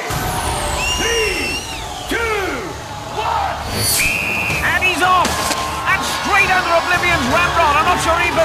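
A single short, steady whistle blast about four seconds in, starting the timed Gauntlet event, over a studio crowd shouting and cheering and the show's driving background music.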